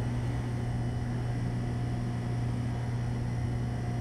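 Steady low hum with an even hiss, unchanging throughout: room background noise with no distinct events.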